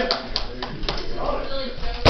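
A few sharp knocks in the first second, the loudest right at the start, with faint voices behind them. They come from SCA combat gear being struck or handled.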